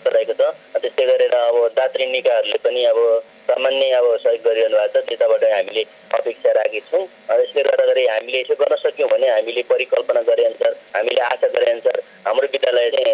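A person speaking continuously with a thin, telephone-like sound that is cut off at the low and high ends.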